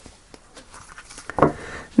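Quiet handling of a deck of tarot cards as it is picked up, with faint light taps and rustles. A brief vocal sound comes about one and a half seconds in, and the rustling grows a little louder near the end.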